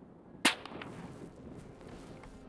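A single shot from a suppressed Winchester XPR rifle chambered in .350 Legend: one short, sharp crack about half a second in.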